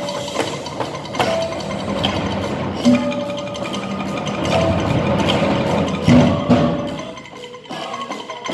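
Live percussion ensemble playing dense, continuous tapping on wooden and mallet percussion with ringing pitched notes. Several strong low drum strokes punctuate it, near the start, about three seconds in, and twice about six seconds in.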